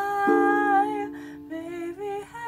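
A woman singing a slow melody in long, held notes, with an instrumental accompaniment under the voice.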